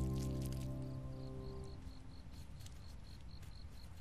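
A sustained low music chord fades out over the first two seconds. Under it, faint crickets chirp in an even rhythm, about four chirps a second, as night ambience.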